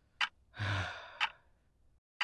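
A clock ticking evenly, once a second. Between two ticks, about half a second in, a person lets out a breathy sigh that lasts nearly a second.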